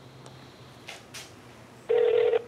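A phone call waiting to connect on speaker: a low steady hum with a couple of faint clicks, then a short electronic phone tone starts right at the end, just before the automated voicemail message.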